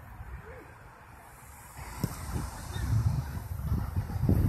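Outdoor five-a-side soccer match sounds: faint distant calls from players, a single thump about two seconds in, then rumbling wind and handling noise on the phone microphone that grows louder as play moves on.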